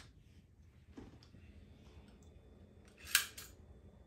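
Stanley heavy-duty staple gun being opened for reloading: a light click about a second in, then a short, sharp metallic snap and rasp about three seconds in.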